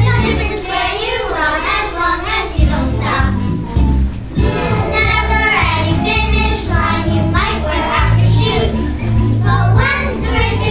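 A group of children singing a song together on stage with instrumental accompaniment; the low bass of the accompaniment drops out for about the first two seconds, then returns.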